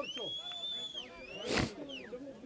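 A high, steady whistle held for about a second, then a second whistle tone that dips and rises again, over shouting voices on the ground. A short sharp burst about a second and a half in is the loudest sound.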